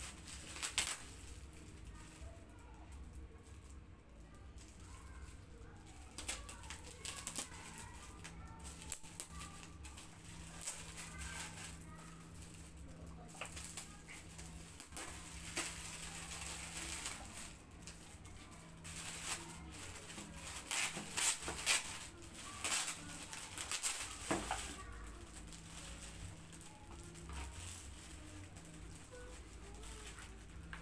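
Cellophane and metallic foil gift wrap crinkling and rustling as it is pulled and torn off a box by gloved hands, in irregular bursts that are busiest and loudest about two-thirds of the way through. A faint steady hum lies underneath.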